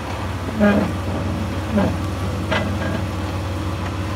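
Jeep Wrangler TJ engine running steadily at low revs, a low drone, as the rock crawler creeps slowly down a rock ledge.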